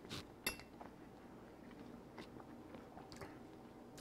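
Faint sounds of a person chewing a mouthful of braised pork and celery, with a few soft clicks, the clearest about half a second in.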